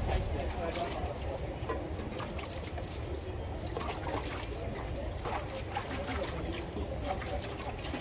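Outdoor street-food stall ambience: indistinct voices and scattered light clinks and knocks over a low steady rumble.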